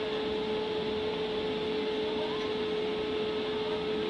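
Steady hum of a blower fan, holding one constant mid-pitched tone over an even rushing noise.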